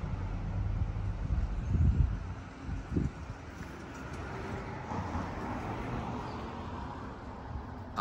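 Wind buffeting the microphone: a low, uneven rumble with stronger gusts about two and three seconds in.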